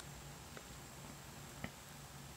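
Quiet room tone with a faint steady hum, broken by two faint clicks about half a second in and again near the end.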